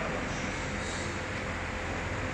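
Steady low hum and hiss of room noise in a large hall, heard in a pause between spoken words.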